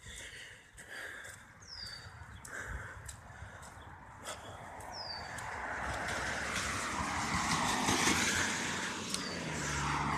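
A car driving past on wet pavement, its tyre hiss swelling from about halfway through and loudest near the end.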